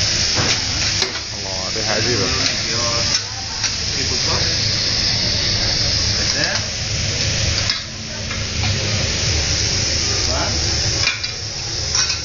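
Seafood sizzling on a hot cooking surface, a steady frying hiss, with a few taps and scrapes of metal utensils.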